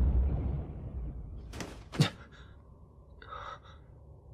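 Animated-film sound effects: a low rumble dying away, then a faint click and a sharp hit about two seconds in, the hit's low tail falling in pitch, followed by a short breathy gasp.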